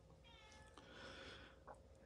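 Near silence, with a faint high animal call, a stack of pitched lines falling slightly, in the first half second, and a soft click near the end.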